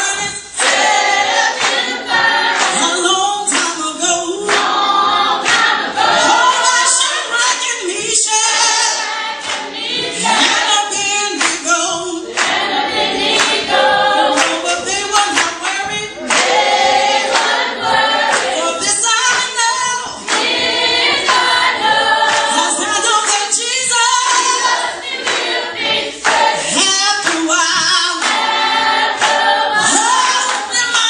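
Gospel song sung by a group of singers and a congregation together, with hand-clapping to the beat.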